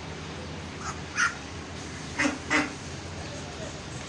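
White domestic duck giving about four short quacks, the last two close together in the second half, over a steady low hum.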